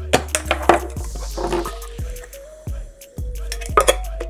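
Metal clicking and scraping as a small hand tool prises open the sealed lid of a tin can, over background music.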